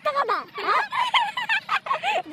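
High-pitched, animated human voices with no clear words, likely the men talking or laughing.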